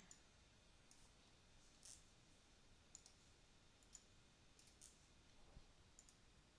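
Near silence with faint computer mouse clicks, about one a second, as text in a web-page editor is selected and formatted.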